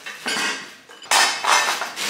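Rustling and clinking of plastic-wrapped flat-pack parts being lifted out of a cardboard box, in two bursts: a short one near the start and a longer one from about a second in.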